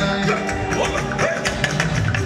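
Live band music played loud through a PA system, with guitar and a steady beat of percussion.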